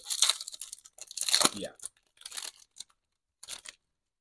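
Foil wrapper of a Topps baseball card pack being torn open by hand, in a few irregular rips and crinkles.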